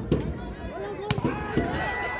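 Crowd chatter with sharp smacks of a volleyball being struck, one just after the start and a louder one about a second in.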